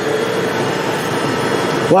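Emery Thompson batch freezer running a batch of banana Italian ice, its motor and refrigeration giving a steady hum with a faint constant tone.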